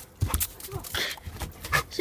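A dog panting and snapping as it jumps to catch tossed snowballs, heard as a few short noisy bursts.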